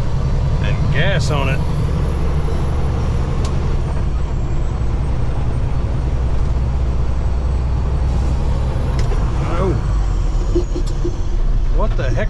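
Steady low drone of a Peterbilt 389 semi truck's diesel engine, heard from inside the cab as the truck pulls onto the highway, with a couple of short voice sounds from the driver.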